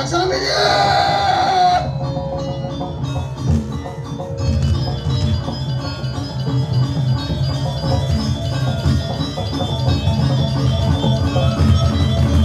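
Balinese gamelan playing: metallophones ringing in fast interlocking tones over steady drum beats. In the first two seconds a loud voice cries out over the music.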